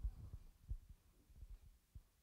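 Faint low thumps and rumble, a few irregular strokes, the strongest right at the start and another just under a second in.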